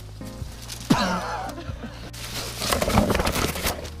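Background music, over which a man gives a loud strained cry about a second in. Near the end comes a loud stretch of rustling, crackling and scuffing from someone scrambling through brush on a steep bank.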